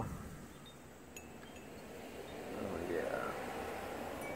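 Faint metal wind chime tones ringing a few times, over a soft background hush that swells about halfway through.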